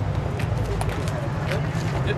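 Indistinct voices of a small crowd gathering outdoors, over a steady low rumble, with a few light clicks.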